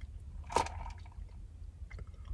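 One short, wet mouth sound about half a second in: lips and tongue smacking as a mouthful of iced coffee is tasted. It sits over a low, steady hum in the car cabin.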